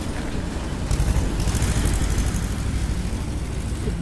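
Motorcycles passing close by on a road, their engine noise over a low traffic rumble, swelling from about a second in and easing off after a couple of seconds.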